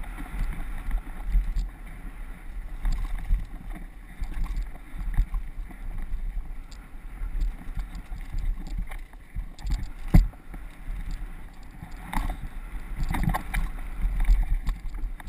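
Downhill mountain bike riding over a rough dirt trail, heard from a helmet camera: steady wind buffeting on the microphone and tyre rumble, with irregular knocks and clatter from the bike. The sharpest knock comes about ten seconds in.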